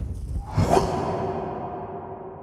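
Wind buffeting the microphone, then about half a second in a whoosh leads into a held electronic chord that slowly fades: a logo intro sting.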